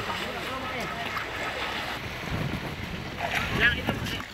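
Wind rumbling on the microphone outdoors, with faint voices in the background.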